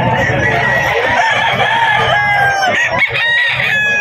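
Several roosters crowing and chickens clucking at once, the calls overlapping continuously with a few clearer crows in the second half.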